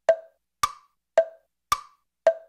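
Sparse percussion beat of hollow, wood-block-like clicks, four strokes evenly spaced about half a second apart, alternating between a lower and a higher pitch with short decays and nothing else playing.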